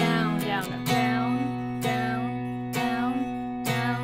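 Telecaster-style electric guitar with a capo, clean tone, strummed in plain quarter-note down strokes, about one strum a second, each chord ringing out until the next.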